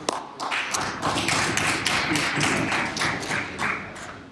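Many legislators knocking on their wooden desks in a dense, uneven patter that builds after about half a second and fades out near the end: desk-thumping, the chamber's applause for a bill just introduced.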